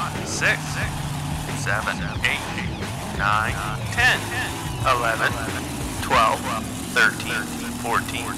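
Cartoon monster truck engine sound effect running and revving, its pitch dipping and rising. Short high-pitched wordless voice whoops with wavering pitch come over it about once a second.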